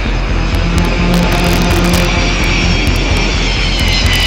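Jet airliner engines running loud as the plane passes low, with a whine falling slightly in pitch near the end, over background music with a steady low beat.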